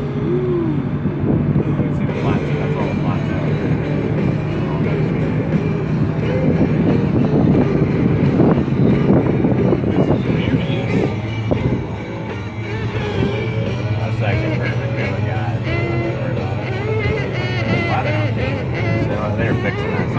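Music playing inside a moving car's cabin, over the steady hum of the engine and road.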